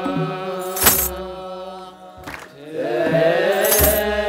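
Ethiopian Orthodox clergy chanting together in long held notes, with a kebero drum beat and a sistrum jingle about a second in and again near the end. The chant drops away around two seconds in, then returns with sliding pitches.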